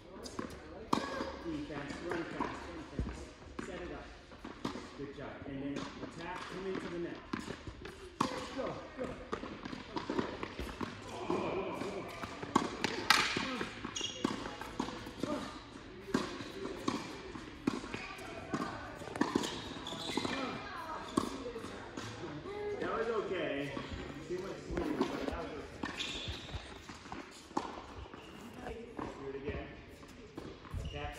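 Tennis balls being struck by rackets and bouncing on a hard indoor court, repeated sharp knocks scattered throughout, over indistinct voices of players and coaches in a large hall.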